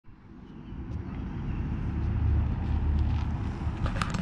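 1967 Plymouth Fury III's engine running as the car approaches, a low engine sound growing steadily louder, with wind on the microphone.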